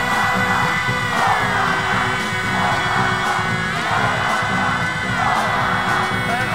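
Rock song: distorted electric guitar holding long notes that slide down in pitch and back up, over a steady beat.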